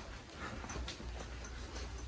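Faint, irregular footfalls and rubbing as a phone is carried while walking, over a low steady hum.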